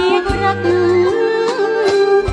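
Background music with a steady beat: a wavering lead melody over held bass notes and regular percussion hits.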